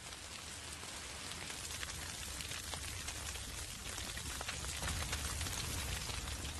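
Bush fire burning through dry grass and scrub, crackling: a steady stream of small pops over a hiss and a low rumble, growing slightly louder toward the end.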